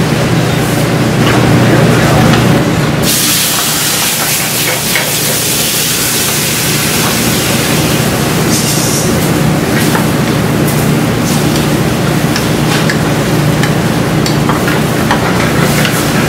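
Shrimp sizzling in a hot sauté pan on a gas range, with scattered clinks. About three seconds in, a loud hissing rush starts and runs for about five seconds as the pan flares up in a flambé, and a shorter burst follows.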